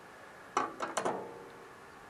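A quick run of about five light clicks and taps about half a second in, with a faint ring after them, over quiet room tone.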